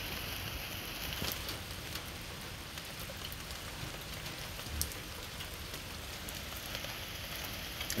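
Steady rain falling, an even hiss of patter with a few faint clicks.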